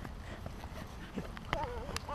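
Footsteps on a dry dirt path over a low rumble of wind on the microphone; near the end a toddler gives a short wavering, sing-song vocal sound.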